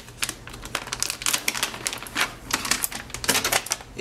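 A foil-and-plastic zip-lock pouch being rummaged through: dense, irregular crinkles and clicks.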